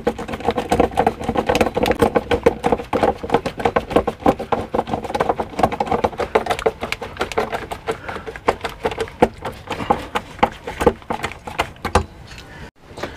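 Hand screwdriver driving a Phillips screw up into the underside of a veneered particle-board cabinet: a rapid, uneven run of clicks and squeaks as the screw turns.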